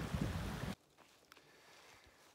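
Steady outdoor rushing noise with a low rumble that cuts off abruptly under a second in, leaving near silence with one faint tick.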